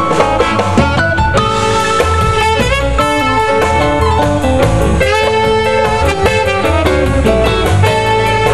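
Live blues band playing an instrumental passage: electric guitar and drum kit with a steady beat, over held notes from the rest of the band.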